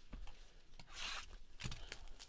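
Plastic shrink wrap on a cardboard box being torn open, with a short rip about halfway through and a few small crinkling clicks after it.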